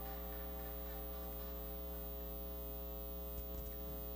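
Steady, low-level electrical mains hum: a constant buzz with a ladder of evenly spaced overtones. It is electrical noise in the audio feed, heard in the gap after the video's soundtrack ends.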